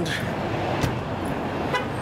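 Road traffic going by, with wind rumbling on the microphone, and a sharp click a little under a second in.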